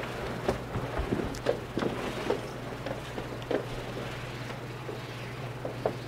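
Quiet room tone with a steady low hum and scattered faint clicks and knocks.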